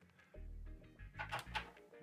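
Faint background music, low under the pause in speech.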